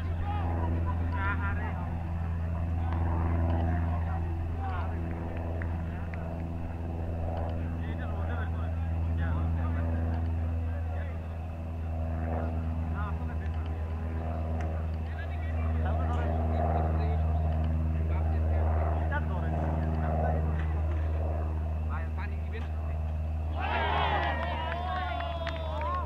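A steady low engine-like hum throughout, with faint, indistinct voices calling across the field over it.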